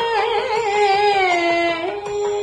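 A woman singing a Carnatic-style Sai bhajan in raga Lalithangi. She holds one sung line with ornamental wavers in pitch, and it glides down to a lower note near the end.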